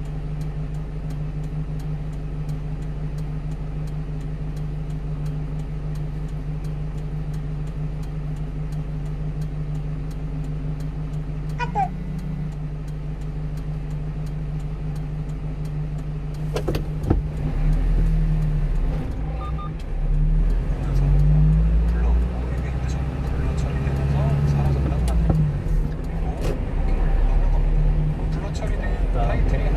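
A 1-ton refrigerated box truck's engine idling steadily while stopped, then pulling away about 17 seconds in and revving up through the gears, its pitch rising and dropping with each shift.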